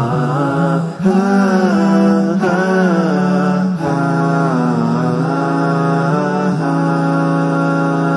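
Chant-like vocal music: a sung melody of long notes sliding between pitches, over a steady low held note.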